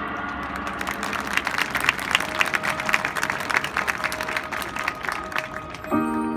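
Audience applause, many separate hand claps, building up about half a second in as the band's music dies away, over a faint held note. Right at the end, mallet percussion chords come in.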